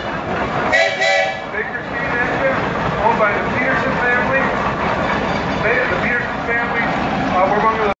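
A steam traction engine's whistle gives one short toot about a second in, over the voices of people talking.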